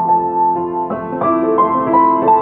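Piano played slowly and softly in an improvisation: held chords ring on, with a new chord struck about a second in and further notes following.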